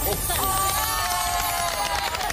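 A few people cheering and whooping just after the cracker's bang, one voice holding a long whoop that slowly falls in pitch.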